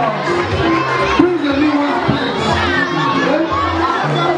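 Crowd of guests shouting and cheering together, many voices overlapping, over music with a steady bass line.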